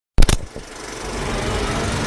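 Intro sound effect: a sudden loud hit with a brief clatter about a fifth of a second in, then a rising noise swell that builds toward the intro music.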